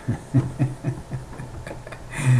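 A man chuckling softly, a run of short laughs that fade away.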